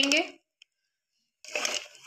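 The end of a spoken word, a second of silence, then about a second and a half in a brief scrape of a steel spoon against an aluminium pressure cooker as tomato purée is spooned into the masala.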